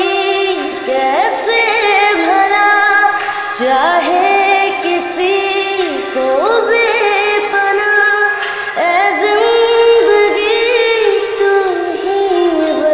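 Music: a woman singing a Hindi song in long held, wavering notes, four phrases in all, each sliding up into its first note.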